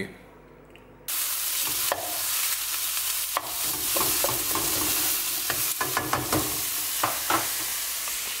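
Chicken sizzling as it fries in a nonstick pan, with the spatula scraping and tapping against the pan as the pieces are turned. The sizzle comes in suddenly about a second in.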